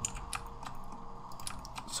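Computer keyboard keys and mouse buttons clicking in a quick, irregular run of light clicks.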